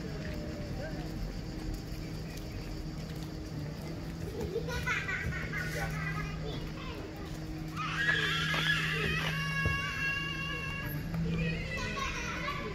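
Children's high-pitched voices calling and shrieking in a park. There are bursts of them about five seconds in, and a louder stretch from about eight seconds that ends in a held, squealing note. A steady low hum runs underneath.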